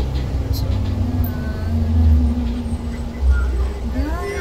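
Low, steady rumble of a moving bus's engine and road noise heard inside the cabin, swelling a little around two seconds in and again just after three seconds.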